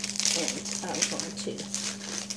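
Small plastic zip-top baggies crinkling as they are handled, in a run of quick crackles.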